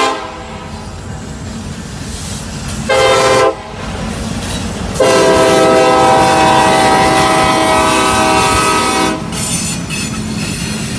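Union Pacific diesel locomotive's air horn on a passing freight train: a short blast about three seconds in, then a long blast of about four seconds. Underneath runs the steady rumble of the locomotives and the wheels on the rails.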